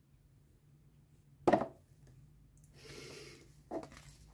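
Cardboard study-card boxes being handled and set down on a wooden floor: a sharp knock about one and a half seconds in, then a soft rustle and another short knock near the end.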